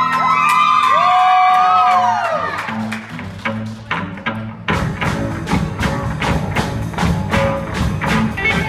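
Live rock band intro: an electric guitar holds long notes that bend and slide down, then a bass guitar plays a few notes, and a little past halfway the drum kit comes in with the whole band on a steady beat.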